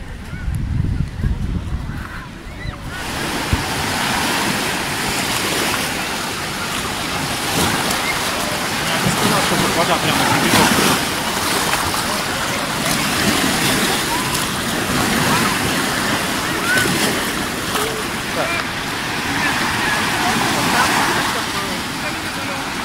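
Small sea waves breaking and washing up on a sandy beach, a steady rush of surf. For the first few seconds, a low buffeting of wind on the microphone is heard before the surf takes over.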